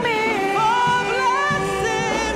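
Gospel praise team singing a worship song, a woman's lead voice holding and sliding between notes.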